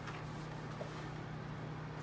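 Room tone: a steady low hum under a faint even hiss, with no distinct sound rising above it.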